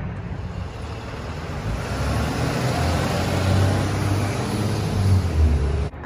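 A car passing by, its road noise growing to its loudest about three to five seconds in, over a steady low rumble of wind on the microphone.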